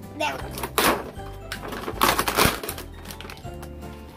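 Plastic and cardboard toy-box packaging rustling and crinkling as it is handled, in two loud bursts about a second and two seconds in, over background music.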